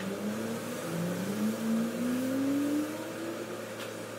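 An engine or motor rising in pitch twice, briefly near the start and then in a longer climb through the middle, over a steady mechanical hum.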